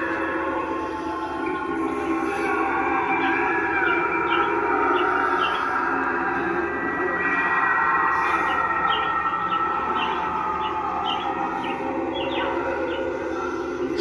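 Sound effects from a Spirit Halloween Mr. Dark animatronic's speaker: a sustained, eerie droning with a siren-like tone that bends up and down and short high ticks running through it.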